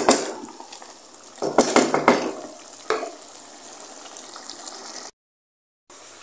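Metal spoon knocking and scraping against a steel pot while mutton and tinday are stir-fried (bhuna), over a steady hiss. There is a knock at the start, a quick cluster of clatters around two seconds in, and another knock about a second later. The sound cuts out briefly near the end.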